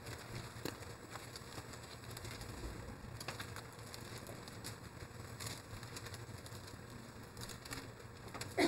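Quiet room tone through the pulpit microphone: a steady low hum and hiss, with a few faint rustles and ticks from handling an open Bible at the lectern.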